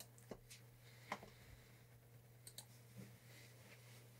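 Near silence: a few faint clicks of a computer mouse over a low steady hum.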